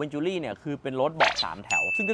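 A man talking, with a short, bright ding sound effect starting near the end.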